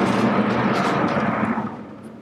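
Vertically sliding lecture-hall chalkboard panels being pushed along their tracks: a steady rolling rumble with a low hum that dies away near the end.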